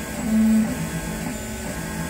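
Large-format DIY 3D printer at work: its recycled NEMA 23 stepper motors whine in short pitched tones that change with each move of the print head. One tone is held louder for a moment about half a second in.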